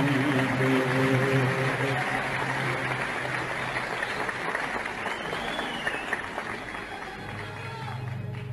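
Audience applauding at a live concert just after the singer's phrase ends, with the orchestra holding a low note beneath it. The applause slowly fades, and the low instrumental notes come back in near the end.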